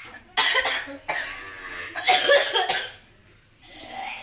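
A child coughing, several loud, harsh bursts over the first three seconds, then it stops.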